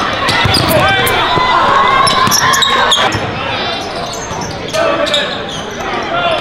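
Live basketball game sound in a gym: a basketball bouncing on the court amid the voices of players and spectators.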